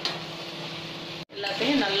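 Diced snake gourd tipped from a strainer into a metal pressure cooker: a brief rush of pieces landing in the pot at the start, then a steady background noise. The sound cuts off about a second and a quarter in, and a voice starts speaking.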